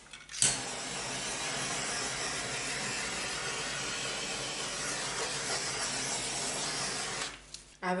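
Handheld butane torch lit with a click about half a second in, then its flame hissing steadily for about seven seconds before it is shut off.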